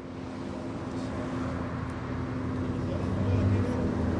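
A motor vehicle's engine running, a steady hum with road-like noise that grows gradually louder.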